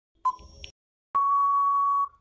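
Quiz countdown timer sound effect: a short beep near the start as the last tick of the count, then a long steady beep from about halfway through, signalling that time is up.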